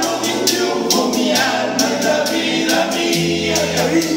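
Live acoustic paseo: two acoustic guitars strumming under several male voices singing together in harmony, with maracas shaking a steady rhythm.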